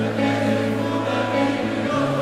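Live band playing a slow song intro, a held bass note under it, with the voices of a large arena crowd rising over the music.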